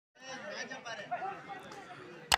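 Spectators talking and chattering, a mix of voices with no clear words.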